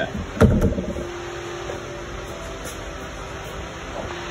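A single sharp knock about half a second in, from the fish-tail replica being handled on the cardboard work surface. Then a steady background hiss with a faint low hum.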